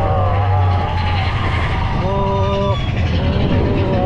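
Mine-train roller coaster running along its track with a loud low rumble, strongest in the first second, heard from a seat on the train. A high held tone sounds for under a second about two seconds in.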